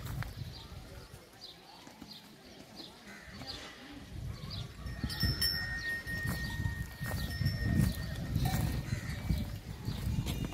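A herd of humped zebu cattle and a donkey moving about on bare dusty ground: hoof steps and shuffling, growing louder about halfway through, with short high chirps repeating over it and a thin steady whistle for a few seconds in the middle.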